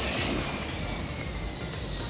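Airplane flyby whoosh sound effect: a hiss that starts suddenly and slowly falls in pitch as it fades.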